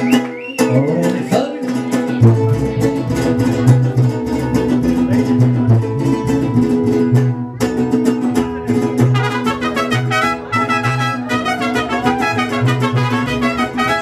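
Mariachi string instruments playing an instrumental passage: a guitarrón plucking deep, rhythmic bass notes under the steady strumming of a vihuela. A quicker run of higher notes joins in the second half.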